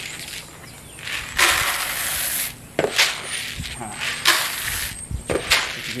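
Freshly roasted coffee beans poured from one plastic container into another to cool them and shed the chaff: a rushing rattle of beans lasting about a second, then a few sharp clacks and shorter pours.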